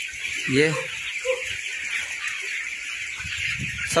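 A large flock of 20-day-old broiler chickens peeping and chirping together in a steady high chatter.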